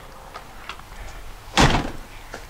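A door shutting once with a short bang about one and a half seconds in, after a few faint clicks.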